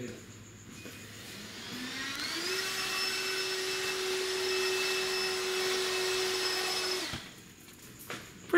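Portable vacuum cleaner starting up with a rising whine, running steadily as it sucks up the mess left by milling a circuit board, then switching off about seven seconds in.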